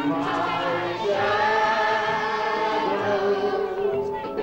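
A crowd of voices singing a song together, holding long notes.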